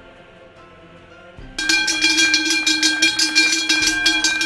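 Soft background music, then about a second and a half in a loud, rapid ringing starts: a cowbell being shaken hard, its clapper striking many times a second over a sustained metallic ring.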